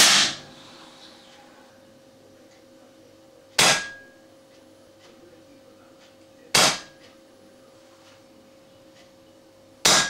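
Four air rifle shots about three seconds apart, each a sharp crack with a short ringing decay. The first comes from the bare muzzle, and the later ones through a fitted Weihrauch silencer.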